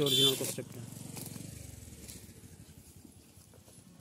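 A voice briefly at the start, then faint handling of a taped cardboard box: quiet rustles and ticks of cardboard and packing tape as the box is pulled open by hand, fading almost to silence.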